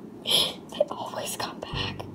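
A person whispering in short breathy bursts, with a few soft clicks between them.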